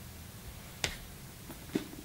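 Quiet room with a single sharp click about halfway through and a brief low sound near the end.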